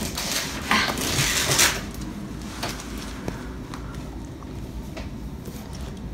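Rustling and handling of a fabric carrying bag that holds an LVAD controller and its batteries as it is pulled open, loudest in the first two seconds, then quieter handling with a few small clicks.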